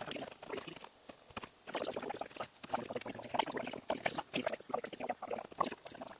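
Razor blade scraper scratching emblem adhesive residue off a truck door's painted panel in short, irregular strokes.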